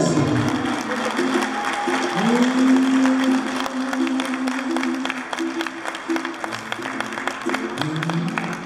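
A slow song for the dance ends, its singer gliding up into a long held note about two seconds in, while guests applaud with steady clapping throughout.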